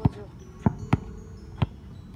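A basketball dribbled on an outdoor court: four bounces at an uneven pace, two of them close together in the middle.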